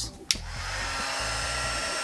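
Heaterizer XL-3000 heat gun switched on with a click about a third of a second in, then its fan blowing steadily.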